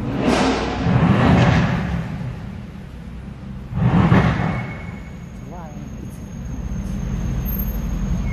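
Sports car engine revved twice, about four seconds apart, each rev's exhaust noise echoing and fading in an underground concrete car park, over a steady low engine rumble.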